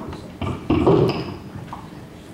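A few knocks and thumps of handling, a short one about half a second in and a louder bumping cluster about a second in, with no organ playing yet.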